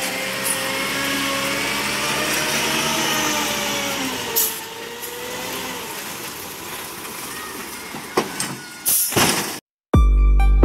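Heavy truck running close by: steady engine noise with a wavering whine, easing off after about four seconds, with a few brief bursts of noise near the end.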